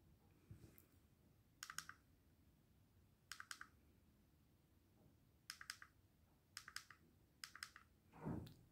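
Small plastic push button on a power bank pressed repeatedly, giving faint clicks in six short clusters a second or two apart as it switches the flashlight LED and the battery-level lights.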